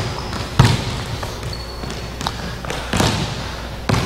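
Basketballs bouncing and being caught on a hardwood gym floor: a few scattered thuds, the loudest about three seconds in, echoing in the gym.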